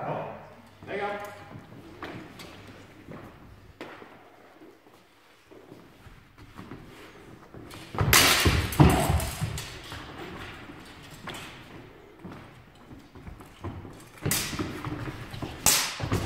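A sword-fencing exchange: a loud burst of thumps, stamping feet on a wooden floor and clattering blades about eight seconds in, with two shorter bursts near the end.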